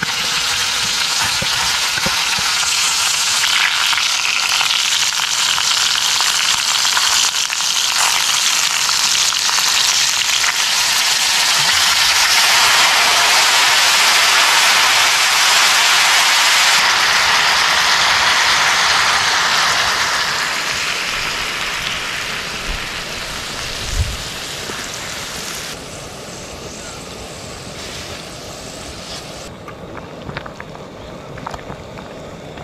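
Hot cast-iron Dutch oven sizzling loudly under seared meat and vegetables. The hiss swells to its loudest around the middle, as wine poured into the hot pot boils off in steam, then dies down over the last third. A single knock sounds about three-quarters of the way through.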